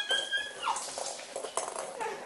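A toddler's high-pitched squeal that drops away under a second in, followed by light taps and shuffling on the wooden floor as he crawls.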